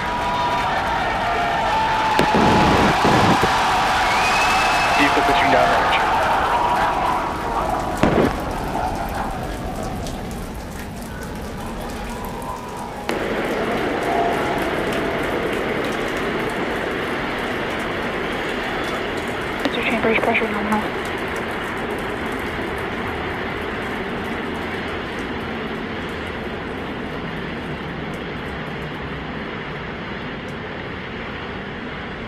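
The 33 methane-fuelled Raptor engines of SpaceX's Super Heavy booster firing at full thrust through liftoff and ascent, heard as a dense, even rumble. Crowd voices are mixed in during the first part, and the sound changes abruptly about 13 seconds in.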